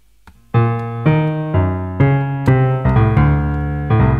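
Software piano instrument in a DAW played from a MIDI keyboard: chords begin about half a second in, with a new chord struck roughly every half second, each ringing on until the next.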